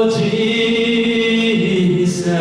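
Slow worship singing with long held notes, the melody stepping down in pitch about one and a half seconds in.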